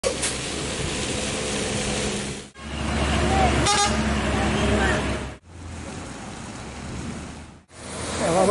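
Heavy trucks and road traffic running on a muddy road, heard as three short clips that each cut off abruptly. A brief vehicle horn toot comes about halfway through, with faint voices mixed in.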